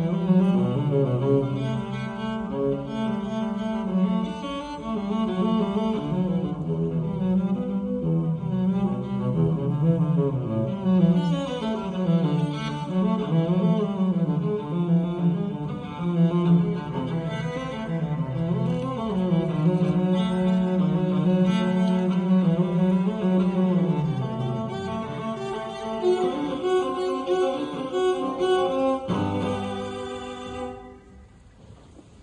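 Solo cello played with the bow: a flowing classical melody with quick runs up and down the instrument, thinning out and dying away near the end.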